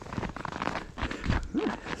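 Footsteps crunching in fresh snow, mixed with crackly rustling from a sheet of foil-faced bubble-wrap insulation being carried.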